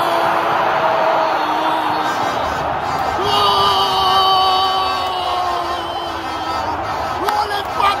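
Football commentator's drawn-out goal cry: two long held shouts, the second starting about three seconds in, celebrating a penalty goal. A room of fans cheers and shouts underneath.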